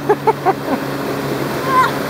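A short burst of laughter, then the steady rush of river water with a faint low hum underneath.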